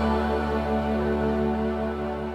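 Closing bars of a Christian pop ballad: a held instrumental chord over a softly pulsing low note, slowly fading out.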